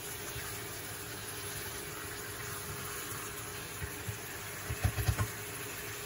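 Chicken pieces sizzling steadily as they fry in spiced masala in a nonstick pan, over a faint steady hum. A few soft low knocks come about five seconds in.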